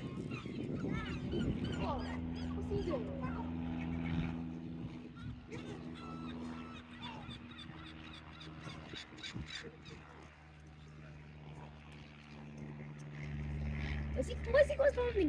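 Birds calling with many short, up-and-down cries, busiest in the first few seconds and thinning out later, over a steady low hum.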